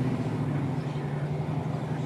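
Car engine running at a steady speed, heard from inside the cabin as a steady low hum.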